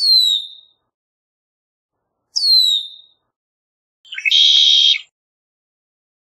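Red-winged blackbird calling: two short whistled notes that slide down in pitch, about two and a half seconds apart, then a harsh buzzy note lasting about a second.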